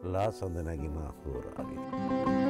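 A man's voice with faint, steady background music under it; near the end a music recording comes in.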